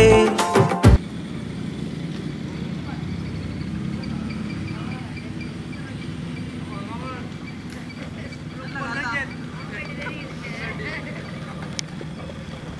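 A song with singing stops abruptly about a second in, leaving a steady low outdoor rumble with faint, distant voices coming through now and then.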